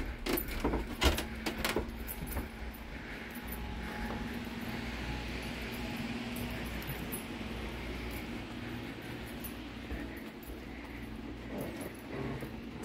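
Keys jangling as someone walks, with several sharp clicks and knocks in the first two seconds while stepping off a creaky wooden footbridge, then a steady soft hiss.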